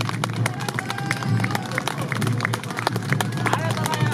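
Awa odori festival band (narimono) playing: quick, sharp metallic strikes of the kane hand gong and drum beats, several a second, under a bamboo flute's wavering melody.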